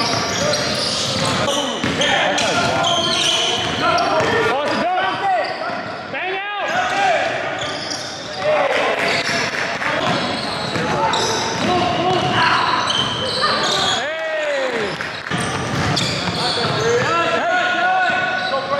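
Basketball being played on a hardwood gym court: the ball dribbling, sneakers squeaking a few times, and players calling out, all echoing in the large hall.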